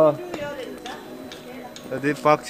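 A voice trails off at the start, then a few faint, sharp ticks a few tenths of a second apart, footsteps on a paved path, before talking resumes near the end.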